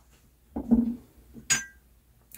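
A glass fragrance bottle clinking sharply once against glass as it is picked up, with a short ring, after a softer, duller sound of handling.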